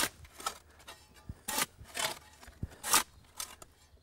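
A metal shovel scraping and scooping loose soil: a string of short, irregularly spaced scrapes, roughly one to two a second.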